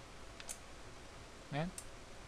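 Two short, sharp clicks as the push-button power switch of a Force Line Eternity voltage stabilizer is pressed and the unit switches on.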